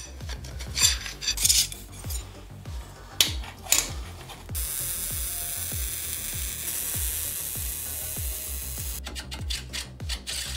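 Steel parts scraping and clinking against a steel tube frame for the first few seconds, then the steady crackling hiss of MIG welding, which starts abruptly and cuts off about a second before the end. Background music with a steady beat runs underneath throughout.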